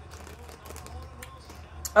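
Faint chewing and soft mouth clicks from a mouthful of chili-and-slaw hot dog over a low steady hum, with a voice starting right at the end.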